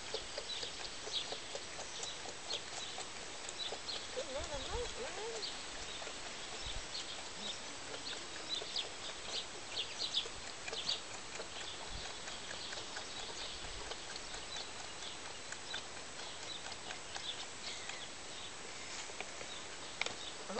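A lamb suckling from a hand-held milk bottle: irregular wet sucking and smacking clicks over a steady outdoor hiss, with a brief wavering call about four seconds in.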